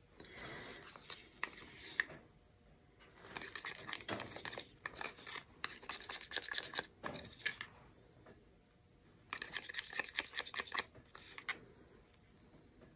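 A spatula scraping and stirring black cell activator in a small plastic cup, in two spells of rapid scratchy strokes with quick clicks: one a few seconds in, lasting about four seconds, and a shorter one near the end.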